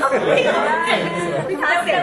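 Speech only: several voices talking in Thai, partly over one another.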